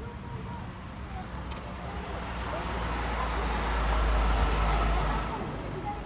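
A motor vehicle drives past close by. Its engine and tyre rumble swells to a peak about four to five seconds in, then falls away quickly.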